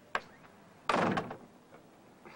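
A short click, then a door shutting with a heavy thud about a second in.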